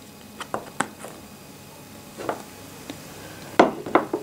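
A few light clicks and taps from board-game cards and pieces being handled on a tabletop, the loudest pair near the end.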